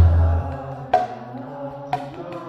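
Mridanga drum played by hand: a deep bass stroke rings out and fades within the first half second, then two sharper, higher strokes follow about a second apart.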